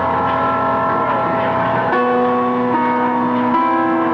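Live rock band playing loud, with no singing: electric guitar and band holding long, droning notes that shift to new pitches a few times.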